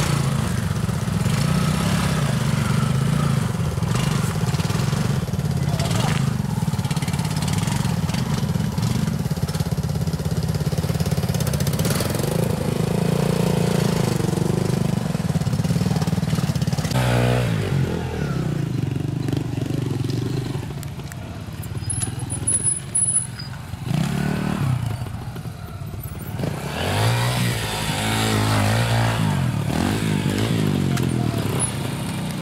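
Twin-shock trials motorcycle engines running as riders climb a steep dirt hillside section, with the throttle blipped and revved in rising sweeps about halfway through and again near the end.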